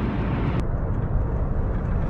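Steady road and engine noise inside the cabin of a moving car, strongest in the low range; the higher hiss drops away abruptly about half a second in.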